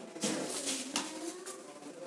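Faint pigeon cooing in the background, with soft rustling of a cloth being handled.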